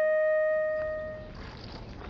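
A flute holding one long note that fades out a little over a second in. It is followed by quieter outdoor background noise with faint, irregular clicks.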